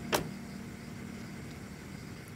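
A single brief, sharp sound just after the start, sweeping quickly down in pitch, followed by faint steady background hiss.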